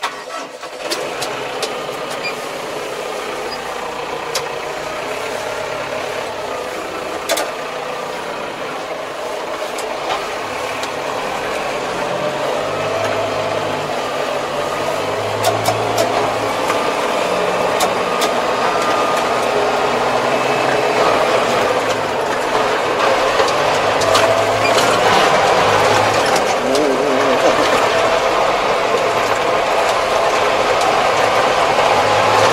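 A tractor's diesel engine starting up and then running steadily as the tractor drives along, growing gradually louder, heard from inside the cab.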